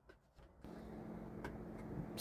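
A few faint, small clicks, then a steady low background hum that starts about half a second in, with one or two more light clicks.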